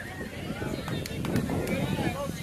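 Indistinct spectator chatter with wind buffeting the microphone, and a few sharp clicks about a second in.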